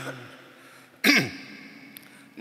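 A man briefly clears his throat about a second in, a short sound falling in pitch, during a lull between phrases of a chant into a microphone.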